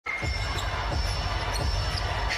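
Basketball being dribbled on a hardwood court, a series of low bounces, with the arena crowd's murmur underneath.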